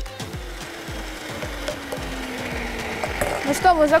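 Electric meat grinder running at the end of a batch of minced meat. Its motor pitch falls steadily over about three seconds, with a soft music beat underneath.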